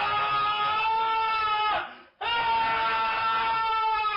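Two long held high notes, each about two and a half seconds and steady in pitch before dipping at the end, with a short gap between them about two seconds in.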